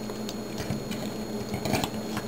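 A plastic Transformers action figure being handled, with light scattered clicks and rubbing as its knee panels are flipped up and the figure is set standing, a few more clicks near the end. A steady low hum runs underneath.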